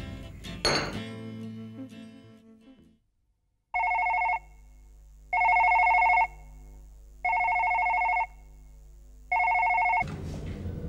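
Background music fades out over the first three seconds; then, after a brief silence, a telephone rings four times, each electronic ring about a second long with pauses of about a second between.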